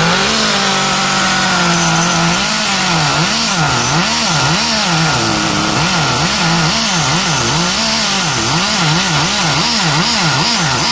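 Small two-stroke nitro glow engine of an RC car running, its pitch rising and falling over and over, the swings coming quicker in the second half.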